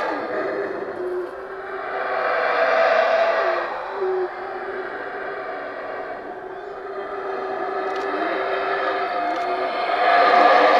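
Yucatán black howler monkeys howling in the canopy: long, deep, droning roars that swell loudest a couple of seconds in, fall away, then build again toward the end.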